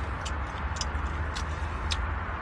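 Mouth sounds of a man chewing a piece of orange: about four short clicks over a steady hiss and low hum.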